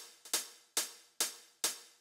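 TR-909 drum-machine hi-hat sample playing on its own in a steady pattern, about two and a half sharp ticks a second, each fading out quickly.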